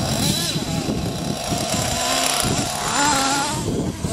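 Small nitro (glow-fuel) RC car engine running with a buzzing two-stroke note, revved up briefly a couple of times.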